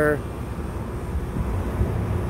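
York rooftop heat-pump package unit running, a steady low rumble of its compressor and condenser fan.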